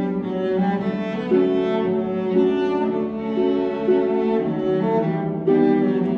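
Live trio of cello, violin and concert harp playing a Christmas arrangement, with long bowed notes and the cello carrying the melody.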